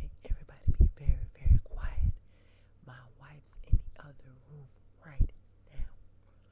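A woman whispering close to the microphone in short bursts, a run of quick phrases in the first two seconds and then a few separate ones, each with a low breath pop on the mic.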